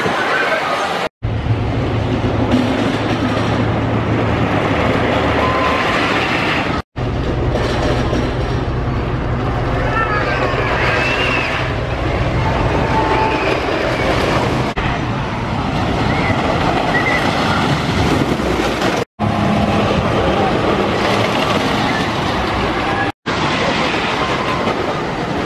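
Wooden roller coaster train rumbling and clattering along its track, with riders' and onlookers' voices and shouts over it. The sound breaks off abruptly four times where separate takes are joined.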